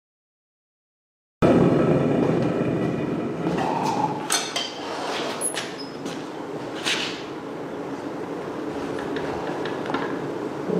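Propane foundry burner running with a steady rushing noise that cuts in suddenly about a second and a half in, eases off over the next few seconds, then holds steady. A few sharp metal clinks from tools sound over it.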